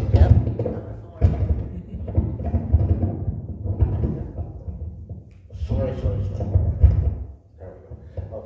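Handling noise from a clip-on lavalier microphone being held and fumbled with in the hands: loud, uneven low rumbling and thuds, with a lull about five seconds in.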